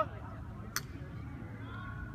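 Lacrosse play on an open field: one sharp clack about three-quarters of a second in, over a steady low rumble, with a distant voice calling near the end.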